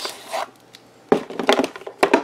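Hands handling a foam model-plane fuselage: a short scuff, then a run of quick light knocks and rubs starting about a second in.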